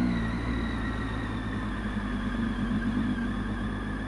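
Triumph Tiger 800 XCx's three-cylinder engine running steadily on the move, dropping a little in the first half second, then holding an even note.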